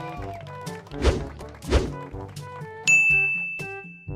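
Playful background music with two heavy thumps about two-thirds of a second apart, then a bright ding a little before the end that rings on.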